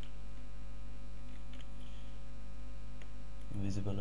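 Steady low electrical mains hum on the recording, with a few faint clicks; a man starts speaking near the end.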